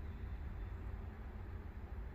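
Outdoor ambience dominated by a steady low rumble, like wind buffeting the microphone.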